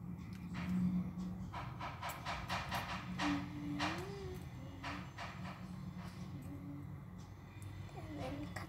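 Copper wire being handled and straightened by hand: a run of small clicks and rustles, with a few more clicks later, over a steady low background hum.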